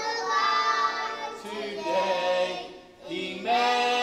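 A group of voices, children and a man among them, singing a worship song together in long held notes, with a brief break between phrases about three seconds in.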